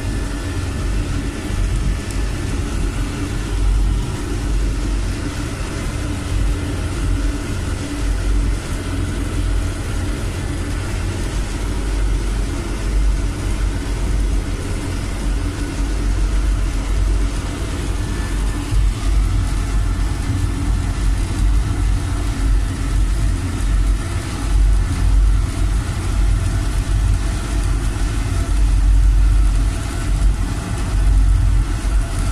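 Fuel-oil burner on a boiler running: a steady rumble of fan and flame with a constant hum, its higher tones shifting slightly about two-thirds of the way in.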